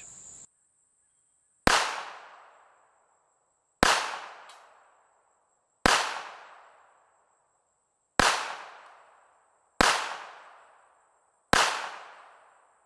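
A Kahr CW380 .380 ACP pocket pistol firing six shots at a slow, even pace about two seconds apart, each sharp report trailing off in an echo over a second or so. A steady high insect drone runs underneath.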